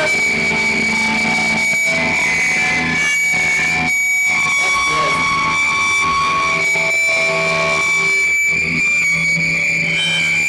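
Live band's electric guitars holding loud, sustained distorted notes over a steady high ringing tone, with no drum beat yet.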